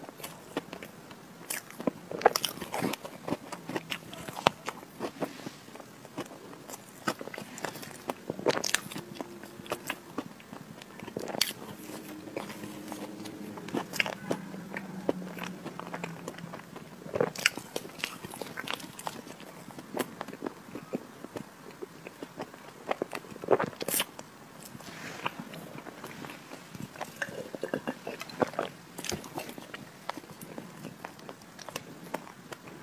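Close-miked chewing of chocolate Oreo cream cake: irregular wet smacks and clicks of the mouth, with a soft low hum for a few seconds around the middle.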